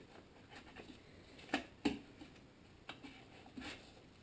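A few faint, light clicks and taps from hands turning a Tecumseh HM80 engine's flywheel and handling the ignition coil and a folded index card while the coil's air gap is set; the two clearest clicks come about a second and a half in, close together.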